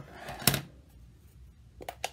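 A plastic stamp ink pad case being handled and opened: a short rustle, one sharp plastic click about half a second in, then a few lighter clicks near the end.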